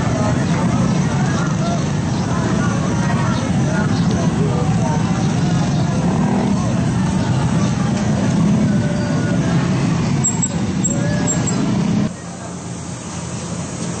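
Busy street noise: motor vehicles running and many voices talking at once, with no single clear speaker. The sound drops abruptly to a quieter street noise about twelve seconds in.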